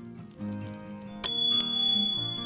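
A bicycle bell rung twice in quick succession about a second in, its bright ring lingering, over background music.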